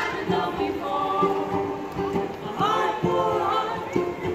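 Small live acoustic band playing with several voices singing together over banjo and trombone, with a steady beat.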